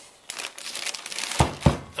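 Crinkling, rustling handling of packaging, then two heavy thumps close together about a second and a half in.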